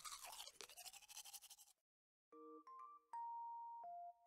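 Faint scrubbing strokes of a toothbrush brushing teeth for a little under two seconds. After a short gap, a tune of clear chiming notes begins about halfway through.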